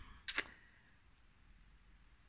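Quiet room tone with one short soft noise about a third of a second in.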